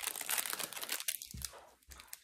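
Clear plastic packaging crinkling as a small item wrapped in it is handled, densest in the first second and then thinning out.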